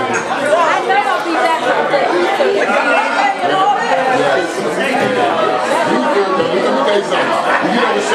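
Crowd chatter: many people talking at once in a large, echoing room, with no music playing.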